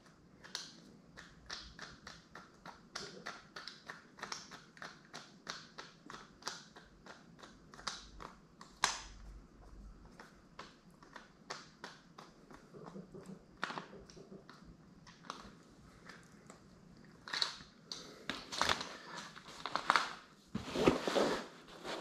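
Hand-worked umbrella swivel adapter and clamp hardware giving a run of small clicks and taps, about two or three a second, with louder rattling and rustling handling near the end.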